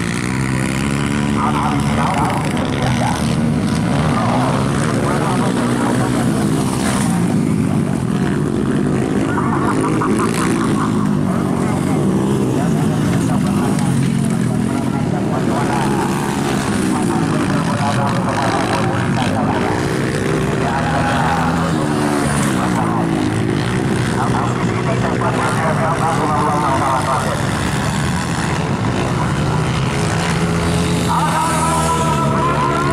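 Several motocross dirt bikes racing, their engines revving up and dropping back as they take the jumps and corners, with the sounds of different bikes overlapping.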